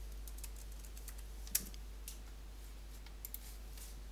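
Faint keystrokes on a computer keyboard, a few irregular clicks as a short search word is typed, one of them louder about one and a half seconds in.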